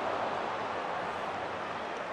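Large stadium crowd reacting to a shot that just missed the target: a steady roar that eases off slightly.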